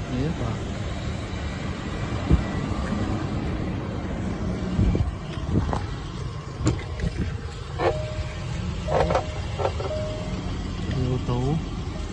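Steady low outdoor rumble with a few sharp clicks and knocks as the Range Rover's driver door is unlatched and opened, plus short fragments of a voice near the end.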